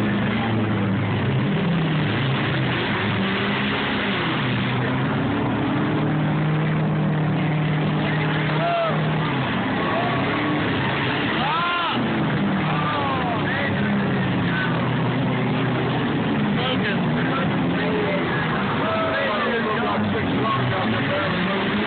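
Several demolition derby cars' engines running and revving together in the arena. Shouting voices rise and fall over them from about halfway through.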